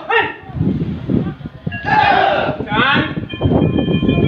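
Short shouted kihap cries from a group of taekwondo students, three of them, over a continuous patter of bare feet thudding on the rubber mat as they drill.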